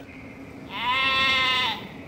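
A sheep bleats once, a single call about a second long starting a little past the middle.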